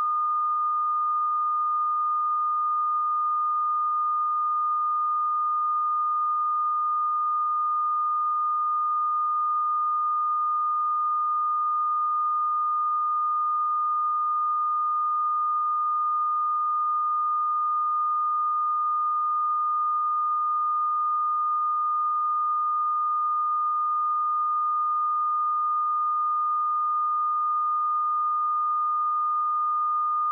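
Broadcast line-up test tone played with SMPTE colour bars: a single pure tone held at one pitch and one level without a break, the reference signal for setting audio levels before the programme.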